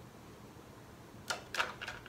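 Three short, sharp clicks about a third of a second apart, starting a little past halfway, over faint room noise.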